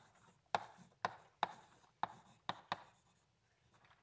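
Chalk writing numbers on a blackboard: a run of sharp taps about half a second apart as each stroke lands, falling quiet near the end.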